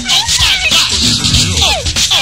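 Live go-go band music: a dense, loud groove running continuously, with short falling pitched glides repeating over it about once a second.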